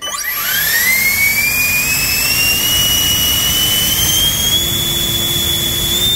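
HSD 120 mm ten-blade electric ducted fan with a 640KV motor on 12S spinning up on a thrust stand: a loud rush of air with a high whine that shoots up in pitch in the first second, then keeps rising slowly for a few seconds before holding steady.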